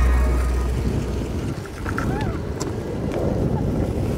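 Longboard wheels rolling on asphalt, a steady low rumble, as background music fades out at the start. A few short chirps come about halfway through.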